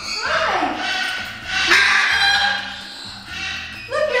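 A macaw screeching loudly: a harsh call at the start and a second, louder one about two seconds in.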